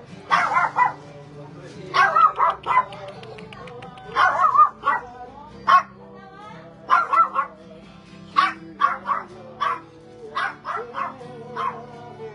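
A dog barking repeatedly in short clusters of sharp barks, over steady background music.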